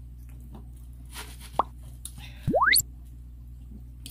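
Drink sipped through a straw from a foam cup, with two quick upward-sliding squeaks: a short one about a second and a half in, then a louder, longer one just after the midpoint.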